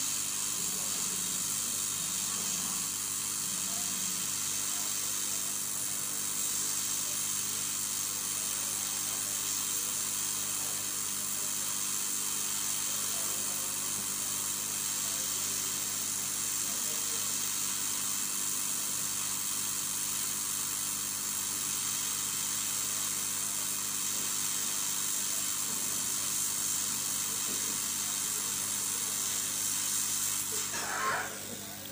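Hot air rework gun blowing steadily on a circuit board, a constant airy hiss with a low hum underneath, as it heats a shorted part to desolder it.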